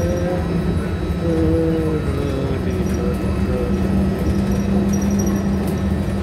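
Steady low drone of a moving monorail heard from inside the car. A voice sings a few wavering notes over it, fading out about two seconds in, after which the drone goes on alone.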